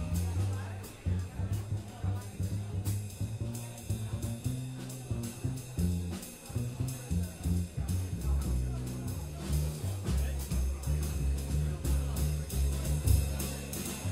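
Live jazz with string bass and drum kit: the plucked bass moves note to note in the low register while the drums keep time with frequent cymbal and drum strokes, the horns mostly out.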